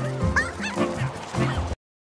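Online slot game soundtrack: a jingly music loop with squeaky cartoon bird calls gliding up and down over it. It cuts off suddenly to silence near the end.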